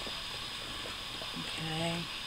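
Steady low background hiss with no distinct handling sounds, then a drawn-out voiced hum from a person near the end.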